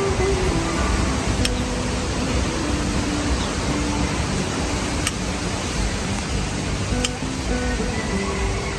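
Steady rushing of a tabletop gas burner's flame under a stainless steel griddle pan, with three light metallic clicks as a spoon ladles cooking oil onto the pan.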